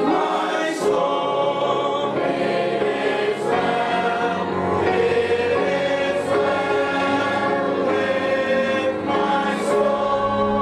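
A choir singing a Christian song, long held notes in several voices, with short sung consonants coming through every couple of seconds.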